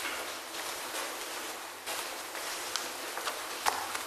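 Soft footsteps and paper rustling at a podium microphone, over a steady hiss of room noise, with a few light knocks scattered through.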